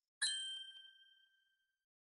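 A bell-like chime struck once about a quarter second in, ringing with several clear tones and dying away over about a second and a half.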